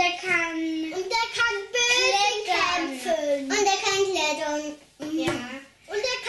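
Young children talking in high voices, with a short pause about five seconds in.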